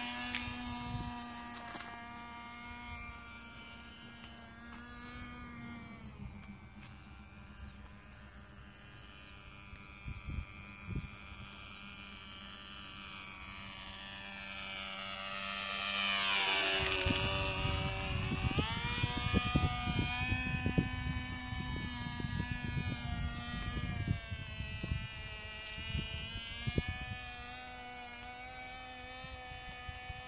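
Cox .049 Tee Dee two-stroke glow engine buzzing at full throttle on a model airplane in flight. It grows louder and swings down in pitch as the plane makes a close pass about halfway through, then fades as it climbs away.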